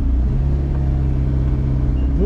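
Car engine and road noise heard from inside the cabin: a steady low hum.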